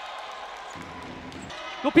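Basketball game court sound: a ball being dribbled on the hardwood over low arena noise, with a commentator's voice coming in near the end.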